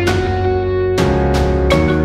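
Instrumental outro music: plucked notes struck every few tenths of a second over a sustained bass, with a chord change about a second in.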